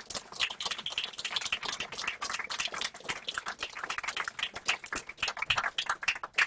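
Small audience applauding: a dense, irregular run of hand claps.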